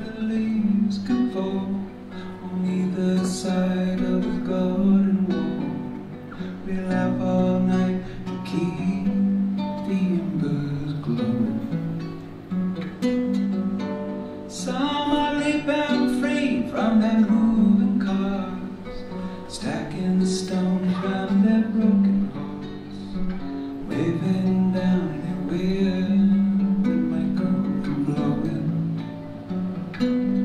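Solo acoustic guitar playing the instrumental introduction of a song, a steady run of picked notes with occasional strums.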